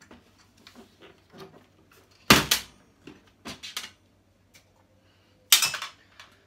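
Clicks and knocks of parts and cables being handled inside the open sheet-metal chassis of a flat-screen TV being taken apart, with two loud clatters, one about two seconds in and one near the end.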